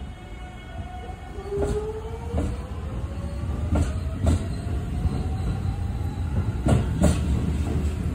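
JR Central 373 series electric train pulling away and gathering speed: its motor whine rises steadily in pitch over a low rumble, while the wheels clack in pairs over the rail joints as the cars pass.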